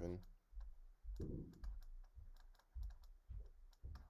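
A pen stylus tapping and clicking on a drawing tablet while handwriting, making irregular light clicks.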